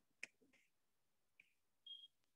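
Near silence with a few faint ticks of a stylus on a tablet screen, the sharpest about a quarter second in, and a brief high tone near the end.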